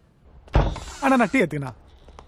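A door bangs open about half a second in, with a deep thump and a brief rush of noise. A man's voice calls out right after.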